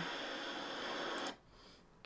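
Surf washing up a pebble beach, a steady hiss of breaking water that cuts off suddenly a little over a second in.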